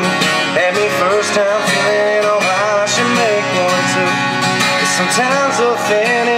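Live acoustic guitar strumming a country song, with a voice carrying a gliding melody over it.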